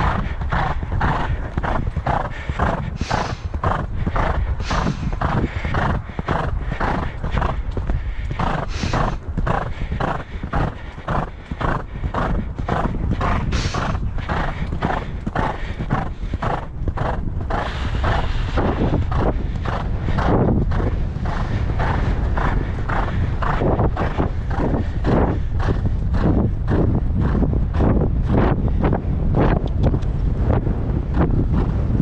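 A horse cantering on a sand track: hoofbeats and breathing in a steady rhythm of about two strides a second, with wind on the microphone.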